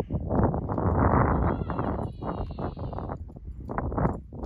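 Footsteps crunching on hard-packed snow in a quick, irregular run of crunches, with a faint high squeak in the middle.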